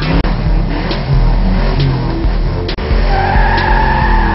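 Programme-intro music with a steady beat, mixed with car sound effects; a long, high squeal like tyres skidding comes in about three seconds in.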